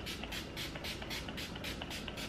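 A pump-action makeup setting spray bottle being spritzed rapidly over the face: a quick, even run of short hissing sprays, about six or seven a second.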